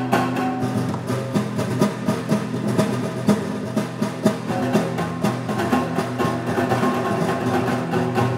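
Two nylon-string classical guitars playing a duet of plucked notes.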